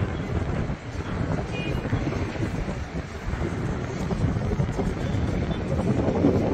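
Wind buffeting the microphone high up on an open tower: a gusty, uneven low rumble over faint city noise from below.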